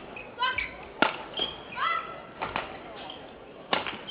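Badminton rally: sharp hits of rackets on a shuttlecock, spaced roughly a second apart, with footwork on the indoor court.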